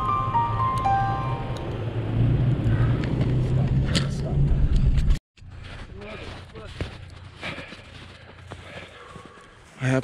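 Steady low rumble of a truck engine, heard from a camera on its roof, as the truck tugs an ice-fishing shack through deep snow; the tail of background music fades out over it in the first second or so. About five seconds in, the rumble cuts off abruptly and a much quieter stretch with faint scattered sounds follows.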